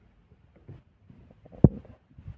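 Plastic jar of an Electrolux personal blender being pressed down onto its motor base, with faint handling noise and one sharp click about one and a half seconds in as it seats.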